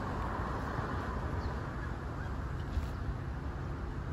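Road traffic noise at an intersection: a steady wash of car and tyre noise with low rumble, a car passing in the first second.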